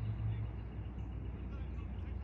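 Outdoor field ambience: a steady low rumble with faint, indistinct voices of distant people.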